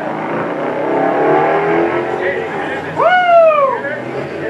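A car engine accelerating, its pitch rising slowly, then about three seconds in a loud note that sweeps up and falls away.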